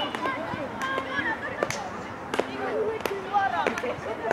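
Several voices shouting and calling over one another across a football pitch, with a handful of sharp knocks scattered through.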